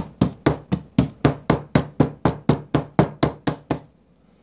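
A one-pound soap loaf mold filled with raw soap batter being rapped repeatedly on a stone countertop, about four sharp knocks a second, stopping just before the end. The tapping settles the batter and brings up trapped air bubbles.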